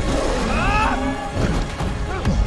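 A monster's roar, the sound effect voiced for Goro, the four-armed Shokan: one loud roar that rises and falls in pitch within the first second, followed by lower growling sounds.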